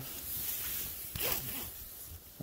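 Nylon fabric of a hammock sock scraping and rustling as a hiking pole used as a spreader bar is pushed against it, with one stronger rasping scrape a little over a second in.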